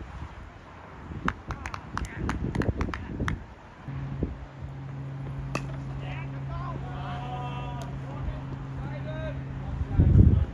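Open-air club cricket ground: a single sharp crack of bat on ball about five and a half seconds in, with faint distant voices of players calling. A steady low hum sets in about four seconds in and holds.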